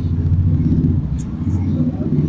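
A loud, low rumble that starts suddenly and holds steady, with an engine-like drone.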